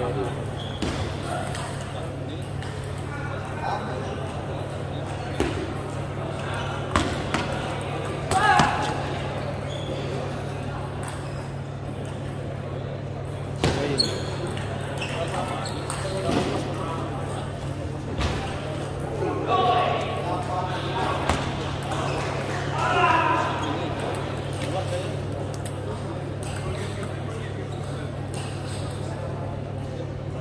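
Table tennis balls clicking off tables and paddles in a large, echoing sports hall, in scattered single hits rather than a steady rally, over a constant low hum and bursts of voices.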